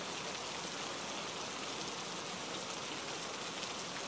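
Steady rain falling, an even hiss of rain with no single drops standing out.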